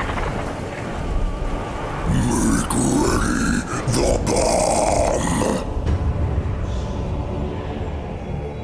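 A wordless creature voice gives a drawn-out vocal sound, starting about two seconds in and lasting about three and a half seconds, over a steady low rumble.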